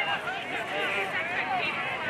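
Many voices shouting and calling at once across the field, overlapping so that no words come through.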